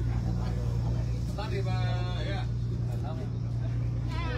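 Steady low drone of a tour boat's engine running, with faint voices about the middle.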